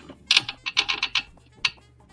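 A quick, irregular run of light clicks, about eight in a second, then one more click after a short gap.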